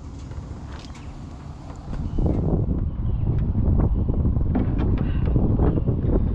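Wind buffeting the camera microphone, getting much louder about two seconds in, with scattered light knocks and scrapes from a small wooden cabinet being carried and handled.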